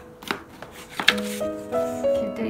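Hands handling a cardboard box and its paper instruction sheet: a light knock about a third of a second in and a sharper knock about a second in. Background music with held notes comes in over the second half.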